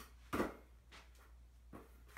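Hands slapping and catching a rubber basketball as it is spun. One sharp slap comes about a third of a second in, followed by two fainter taps.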